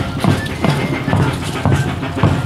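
Drum beating steadily about twice a second, with faint thin piping tones over it: festival band music played for a traditional Moxeño dance.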